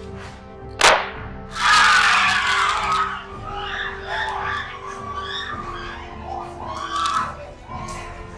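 Background music, with a sharp smack about a second in, then a couple of seconds of loud screaming and shouting, after which voices carry on over the music.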